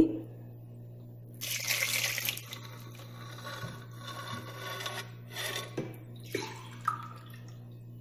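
Water running from a kitchen tap in a short burst about a second and a half in, then quieter water sounds and a few light knocks, over a steady low hum.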